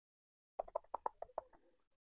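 A short burst of about seven quick, squeaky pulses from a person's sped-up voice, lasting just over a second.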